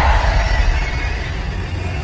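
Trailer sound design: a heavy low boom at the start, its deep rumble hanging on and easing off slightly, with a hiss of noise above it.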